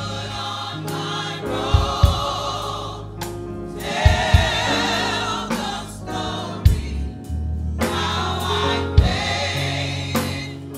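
Gospel choir singing with band accompaniment, over a deep sustained bass line and a few low drum hits.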